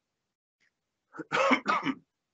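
A person coughing briefly, a few quick coughs together, just over a second in after a moment of silence.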